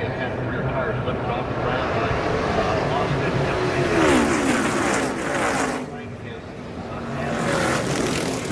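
NASCAR stock cars' V8 engines running in a pack at speed, several dropping in pitch as they pass. There is a louder rush of noise about four seconds in as the multi-car wreck unfolds.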